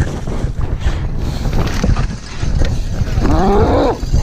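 A downhill mountain bike rattles and clatters over a rough dirt trail, with steady tyre and trail rumble and frequent knocks from the chain and frame. Near the end a person lets out a long, drawn-out shout that rises and then falls in pitch.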